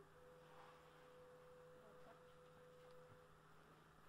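Near silence: a faint steady low hum, with a faint pure steady tone that starts just after the opening and stops about three seconds in.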